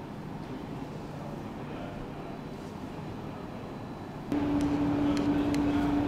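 Steady workroom background noise. About four seconds in it suddenly gets louder, and a steady low machine hum comes in with a few light clicks.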